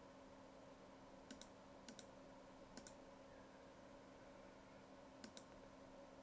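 Computer mouse button clicked four times, each a quick double click of press and release: three about a second apart, then a longer pause before the last, over a faint steady hum.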